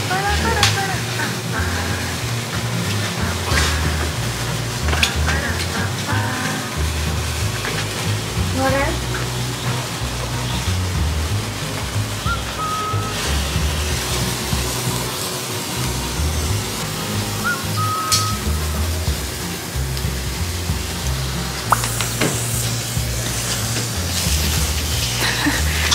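Background music with a steady beat, over the fizzing crackle of lit handheld sparklers.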